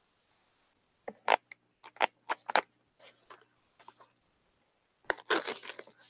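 Handling noise from a pair of ankle boots being turned over in the hands: a few short, sharp crackles and rustles in the first half, then a denser run of them near the end.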